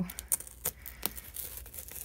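Packing tape on a cardboard shipping box being slit with a small blade: a few short, sharp scrapes and taps against the cardboard.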